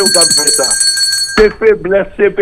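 A high bell-like ring of several steady, clear pitches under a man's speech, held for about a second and a half and then cut off abruptly.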